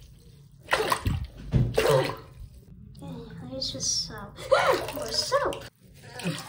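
Bath water splashing as a hand swishes a plush toy through a filled tub, two loud splashes about a second apart. In the second half a person's voice makes sounds that rise and fall in pitch without clear words.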